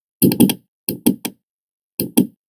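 Quick knocks in short clusters: about four in a row, then three, then two near the end, with dead silence between the clusters.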